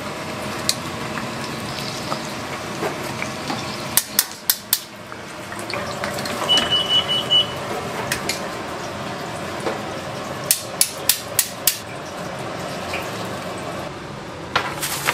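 Oil sizzling steadily in a stainless deep fryer as donuts fry. A wire-mesh strainer and tongs tap sharply against the metal: a quick run of four taps about four seconds in, and five more later as the donuts are tipped onto a wire rack. A short series of high electronic beeps sounds midway.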